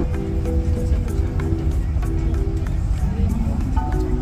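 Background music of held, pitched notes that change about every half second, over a steady low rumble.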